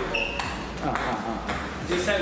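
Table tennis balls clicking sharply off paddle and table, a handful of quick hits spread across the two seconds.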